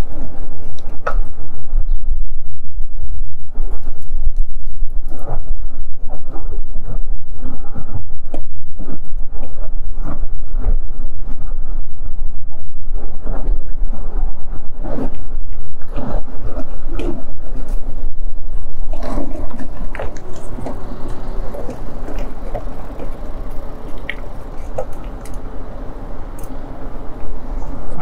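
Wind noise on the microphone of a handlebar-mounted camera on a moving e-bike, a loud steady low rumble, with scattered knocks and rattles from the bike over the road. The rumble eases off about two-thirds of the way through, as the bike slows.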